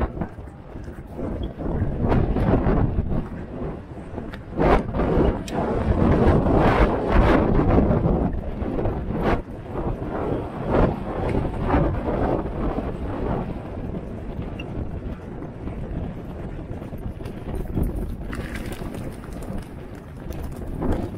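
Wind rushing and buffeting over the microphone of a camera worn by a jockey at full gallop, with scattered thumps.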